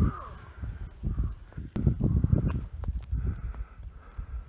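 Uneven, gusty low rumbling across the microphone, with short harsh calls repeating over it every second or so.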